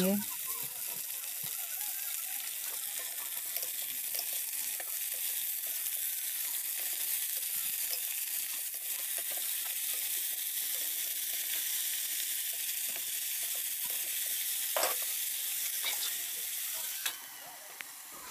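Sliced potatoes frying in hot oil in a pan, a steady sizzle, with a spatula scraping and tapping the pan as they are stirred. The sizzle drops off near the end.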